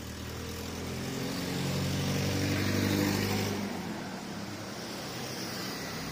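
A car passing at low speed, its engine growing louder for about three seconds, then fading as it moves on down the street.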